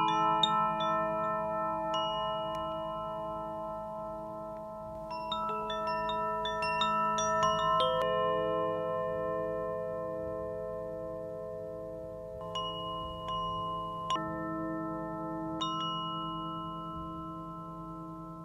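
Chime-like music: groups of struck, bell-like notes that ring on and overlap above a low steady drone, with fresh clusters of notes about five seconds in and again a few times in the second half.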